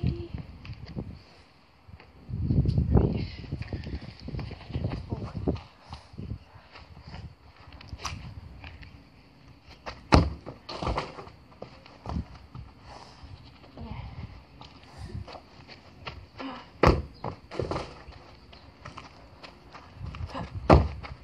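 Irregular knocks and thuds of metal elbow crutches and feet on artificial turf, with sharp thumps of a football being kicked, the loudest about ten seconds in. A low rumbling burst comes around two to three seconds in.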